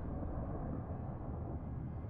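A low, steady rumble of dark sound design from a horror film teaser's soundtrack, with no clear melody.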